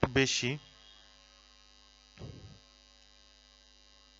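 Steady electrical mains hum with many fixed tones under a man's voice. The voice ends a spoken phrase in the first half-second and makes one brief sound about two seconds in.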